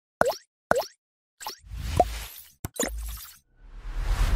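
Synthetic logo-animation sound effects: two quick pops that drop in pitch, then a few whooshes with a short rising blip and a sharp click between them.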